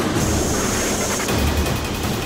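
Aircraft cabin noise inside a hurricane-hunter plane flying into a hurricane's eyewall: a steady engine and airflow roar, a thin high tone through the first second, and a low rumble that swells about one and a half seconds in.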